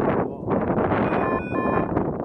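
Strong wind blowing across the microphone, briefly easing about half a second in. About a second in, a short electronic beep sounds, broken by a brief gap in the middle.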